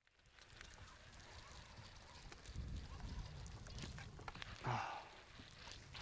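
Faint open-air ambience on the water: light wind rumbling on the microphone, swelling through the middle, with a few small clicks and a brief rustle near the end.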